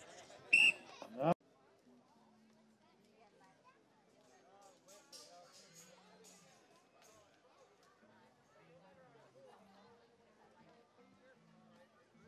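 A race-start whistle blast about half a second in, followed by a loud rising cry, both cut off abruptly about a second later.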